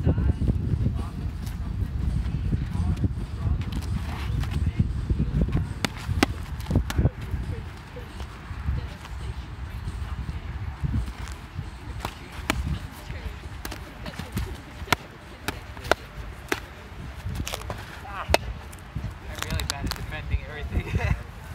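Padded sparring swords striking each other and a round shield: irregular sharp knocks and clacks scattered through the bout, some singly, some in quick pairs. A low rumble of wind on the microphone is heavier in the first half.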